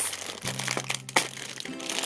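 Thin black plastic blind bag crinkling as hands pull it open, with scattered crackles. Background music holds a low steady note through the middle.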